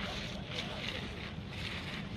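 Wind buffeting an outdoor microphone: a steady low rumble with faint, indistinct background sounds over it.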